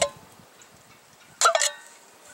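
Church-key bottle opener punching through the bottom of a steel food can: a short metallic crunch with a brief ringing tone from the can, about one and a half seconds in.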